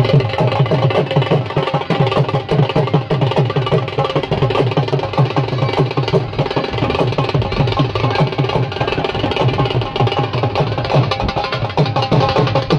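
Dhol drumming: a fast, even run of deep drum strokes, each dropping slightly in pitch, running without a break.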